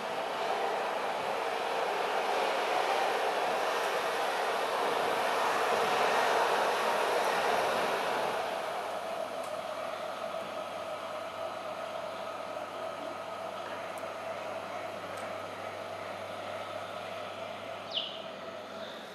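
A steady rushing, rumbling noise with a faint hum in it, swelling over the first few seconds and then easing off.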